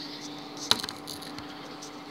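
Samsung microwave oven running with a steady low hum. A little past half a second in there is one sharp click, followed by a few lighter clicks.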